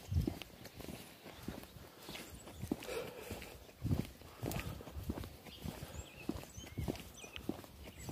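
Footsteps of a person walking outdoors, a string of soft, irregularly spaced thumps, mixed with the rustle of a hand-held phone.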